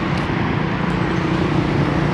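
Steady outdoor motor-vehicle noise, an engine hum under a constant wash of traffic sound.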